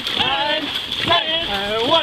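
Dragon boat crew shouting the stroke count while paddling: three loud, drawn-out calls over a steady rush of water and paddle splashes.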